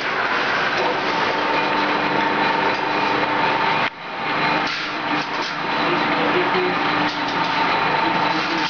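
Machinery of a sheet-steel straightening and cut-to-length plant running steadily, a continuous whine over a loud noisy hum. The sound drops out briefly about four seconds in, then resumes.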